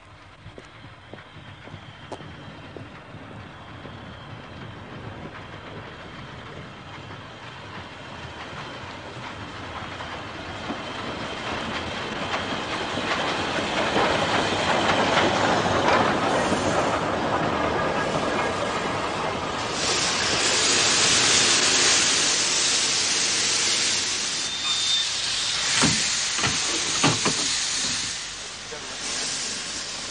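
Steam train drawing into a station, its running growing steadily louder over the first half. In the last ten seconds comes a loud hiss of released steam, with a few sharp knocks near the end.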